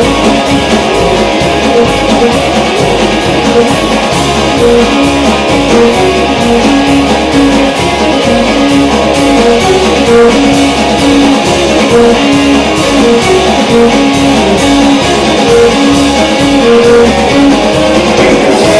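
Live band playing an instrumental passage: electric guitars, bass and drums with a steady beat, and a violin holding long notes over them.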